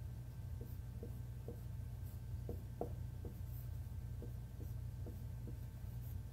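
Dry-erase marker writing on a whiteboard: a string of short, irregular strokes as figures are written, over a steady low hum.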